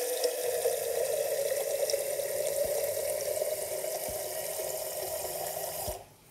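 Tap water pouring into the open stainless-steel boiler of a Bellman CX-25P stovetop espresso maker, a steady splashing stream whose note climbs slightly as the boiler fills. The flow stops abruptly at the end as the tap is shut off.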